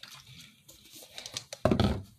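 Plastic bottles of dish soap and counter cleaner handled and then set down on a wooden table: faint rustles and small clicks, then a thump about one and a half seconds in.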